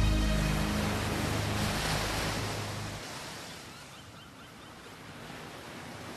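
The song's closing music fades out over the first two to three seconds, leaving a steady wash of ocean waves.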